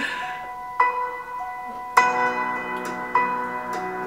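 Background music of struck, bell-like notes that ring on, with a fuller, louder chord about two seconds in.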